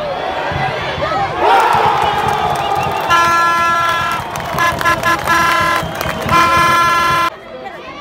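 Football crowd in the stands shouting and cheering, with a fan's horn blowing three long, steady blasts over it; the sound cuts off suddenly near the end.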